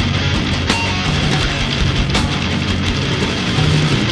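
A heavy metal band playing live: distorted electric guitars, bass and drums in a loud, dense instrumental passage, with cymbal crashes about a second in and again a little past two seconds.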